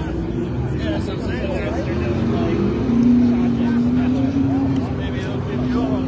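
Limited late model race car engines running at slow caution pace as the field circles the track, with an engine note that swells louder about three seconds in.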